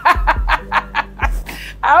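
A woman laughing in a quick run of short bursts that die away about a second in, over soft background music.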